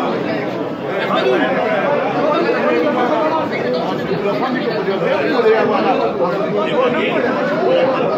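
Overlapping chatter of a group of men talking at once, steady throughout, with no single voice standing out.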